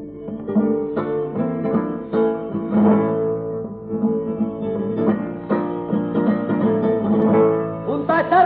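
Flamenco guitar playing an instrumental passage of plucked notes and strummed chords, with no singing, from an old shellac 78 rpm record with a thin, muffled top end.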